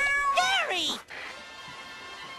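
A cartoon snail's cat-like meow: one drawn-out meow that bends down in pitch and stops about a second in.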